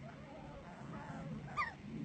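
A single short, sharp squeal from an alpine marmot about one and a half seconds in, typical of marmots fighting, over fainter calls in the background.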